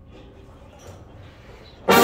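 Low room noise for most of it, then near the end a marching brass section enters all at once on a loud, sustained chord.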